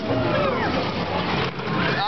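Noise of a Salt & Pepper–type carnival shaker ride in motion, heard from inside the spinning rider's cage: an even rush with a steady low hum underneath.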